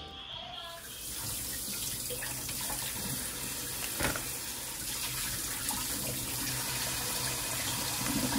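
Kitchen tap running steadily into a stainless-steel sink, splashing over raw chicken drumsticks as they are rinsed, starting about a second in. A brief knock about four seconds in.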